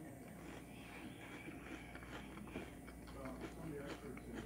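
Faint chewing of a mouthful of cereal and milk, with small clicks and a light spoon scrape in the bowl near the end.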